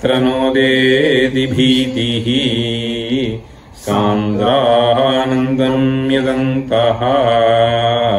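A man chanting Sanskrit verse in the slow, melodic Sragdhara metre, holding long steady notes, with a brief pause about halfway through.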